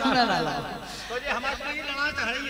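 A man's voice speaking into a microphone.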